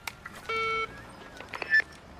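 Handheld megaphone being switched on: a click, then a short flat buzzy tone, then clicks and a brief high squeal, the loudest moment.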